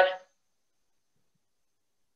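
A woman's voice trailing off at the end of a spoken phrase in the first quarter second, then silence.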